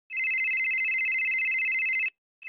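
Telephone ringing: one long, rapidly trilling ring of about two seconds for an incoming call, which stops right at the end.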